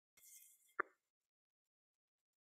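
A brief faint hiss, then a single short sharp pop just under a second in.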